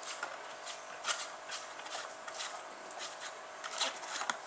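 Faint, irregular light clicks and rubbing from a small spring-powered toy dragster being handled as its axle is turned by hand to wind the string onto it.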